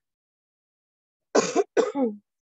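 A woman coughs twice in quick succession, starting about two-thirds of the way in.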